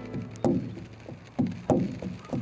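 Rawhide-headed frame drum struck by hand: three beats, one about half a second in and a close pair near the end, each dying away quickly.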